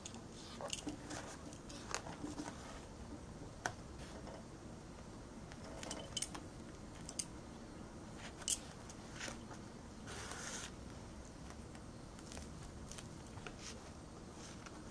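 Faint handling sounds of hand-stitching trim and sequins onto a fabric-covered purse: scattered light clicks and short rustles, with a longer rustle about ten seconds in.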